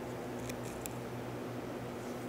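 Steady hum and hiss of an electric fan running in the room, with a couple of faint clicks about half a second and near a second in.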